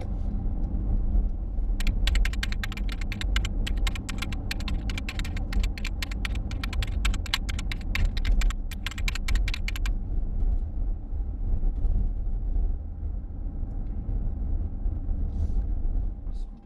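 Steady low road and tyre rumble inside the cabin of a Mercedes-Benz EQC 400 electric SUV while driving, with no engine note. From about two to ten seconds in, a rapid, irregular run of sharp clicks sounds over it.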